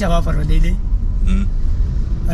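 Steady low rumble of a car's engine and tyres heard from inside the cabin while driving. A man's speech trails off in the first moment, with a brief vocal sound about a second later.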